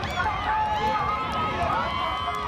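Several voices shouting and calling over one another, some held long, at a long-boat race, with faint regular ticks underneath, about three or four a second.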